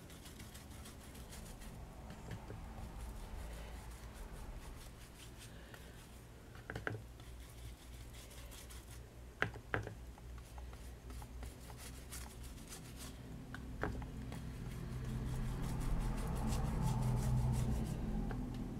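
Paintbrush scrubbing paint back and forth over a ridged bamboo mat, the bristles rubbing across the slats, with three sharp clicks along the way. The sound grows louder near the end.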